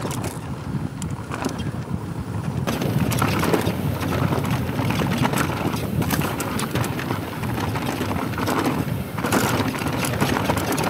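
Mountain bike rolling fast down a rocky dirt trail: tyres crunching and rattling over gravel and stones, with wind buffeting the microphone. About three seconds in the sound turns brighter, with more crisp clatter.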